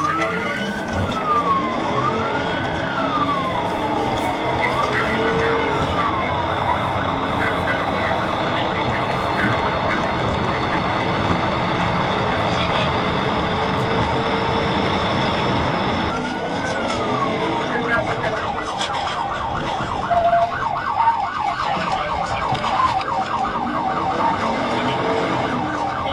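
Police patrol car siren in a slow rising and falling wail, which later switches to a fast yelp for the last several seconds. Under it runs steady engine and road noise from the pursuing car.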